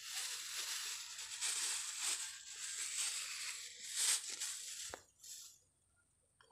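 Thin plastic carrier bag crinkling and rustling continuously as it is handled while taro shoots are gathered into it, stopping near the end.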